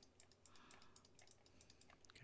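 Near silence, with faint scattered clicks from computer input over a low room hum.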